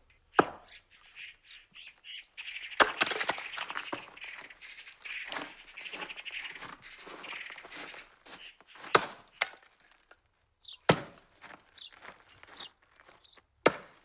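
Axe splitting firewood logs on a wooden chopping block: about five sharp, irregularly spaced strikes. Birds chirp faintly between the strikes.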